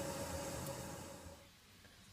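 Faint steady hiss with a thin hum from a pot of broccoli cooking in salted water on the stove, fading to near silence about three quarters of the way through.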